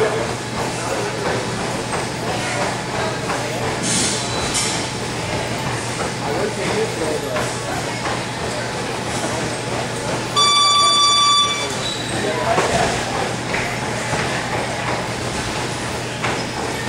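Boxing-gym room sound during Muay Thai sparring: steady hum and room noise with faint background voices, two sharp hits about four seconds in, and a single steady electronic beep lasting about a second, about ten seconds in.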